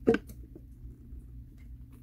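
Liquid hand soap being poured from an upended plastic bottle into a soap dispenser's reservoir: one short loud knock just after the start, then a couple of faint ticks, over a low steady hum.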